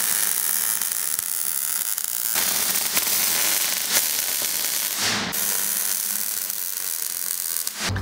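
Millermatic 141 MIG welder laying weld, a steady crackling hiss with a short break about five seconds in, cutting off abruptly just before the end.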